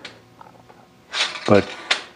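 Steel blacksmith tongs clicking against a steel tong rack as they are handled: a sharp click at the start, then a few faint ticks. A man's voice comes in briefly in the second half.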